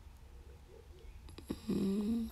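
A woman's soft, breathy laugh beginning near the end, after a quiet stretch of low hum, with a small click just before it.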